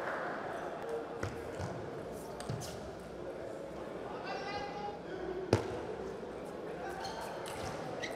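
A few sharp clicks of a table tennis ball striking bats, table and floor, the loudest about five and a half seconds in. There is a steady hall hum, and a brief high-pitched voice a little after four seconds.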